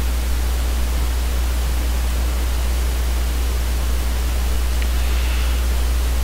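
Steady hiss of recording noise with a strong, constant low electrical hum underneath; nothing else happens.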